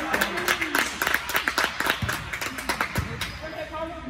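A few spectators clapping rapidly in the gym, mixed with voices, then a basketball bounced on the hardwood floor a couple of times in the second half.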